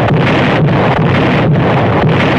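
Loud, steady rumbling din of a dubbed naval-gunfire battle sound track, with a faint pulse about twice a second and no single shot standing out.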